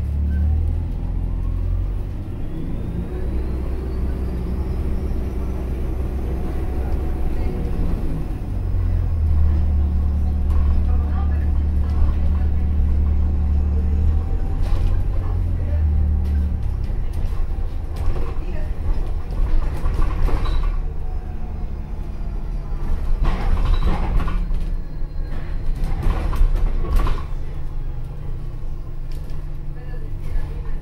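Cabin sound of an Alexander Dennis Enviro400H hybrid double-decker bus on the move: a steady low engine hum and road rumble. A faint whine rises as the bus picks up speed, a couple of seconds in. Scattered knocks and rattles come near the end.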